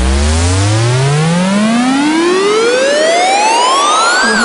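Synthesized electronic sweep effect: a buzzy tone rich in overtones rises steadily in pitch from a deep low to a high whine, over a filtered hiss.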